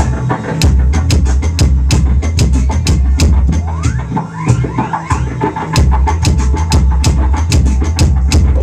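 Live music from a homemade steel-pipe instrument, the Magic Pipe, and a handsaw: a deep bass line under a fast beat of sharp drum hits, with short rising pitch glides from the saw being bent.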